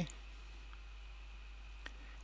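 A single sharp computer mouse click near the end, over quiet room tone with a steady low hum.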